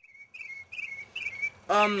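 A bird singing a string of short, high, warbled phrases, four or so in a second and a half.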